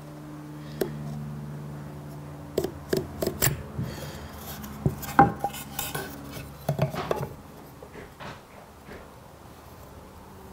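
Marking knife and small metal square clicking and tapping against each other and a softwood beam as knife lines are squared across: scattered light clicks, busiest around three seconds in and again between five and seven seconds, over a steady low hum.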